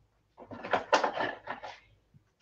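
Rustling and knocking of things being handled and picked up, in a string of irregular strokes starting about half a second in and lasting about a second and a half.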